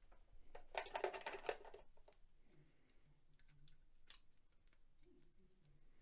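A quick run of light metallic clicks and rattles about a second in, then a single click later: a digital caliper with a shoulder comparator insert and a brass rifle case being handled while measuring the case. Otherwise near silence.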